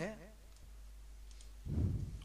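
A man's voice trails off, then comes a pause with a faint computer mouse click just past halfway. A low muffled sound follows near the end.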